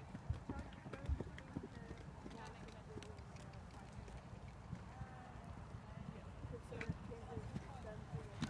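A New Forest pony cantering and jumping on a sand arena surface: soft, muffled hoofbeats with a few sharper knocks.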